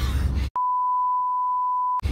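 A steady single-pitch test tone, the beep that goes with TV colour bars, starting abruptly about half a second in and holding at one pitch. A voice and car-cabin rumble are heard briefly before it cuts in.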